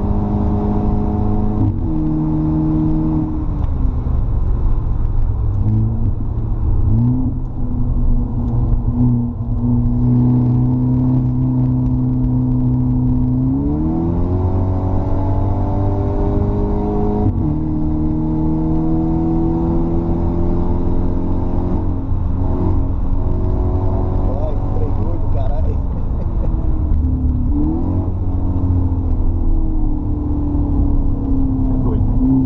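Car engine heard from onboard during a fast track lap: its note climbs as the car accelerates, then changes pitch abruptly several times as the driver shifts and lifts for corners.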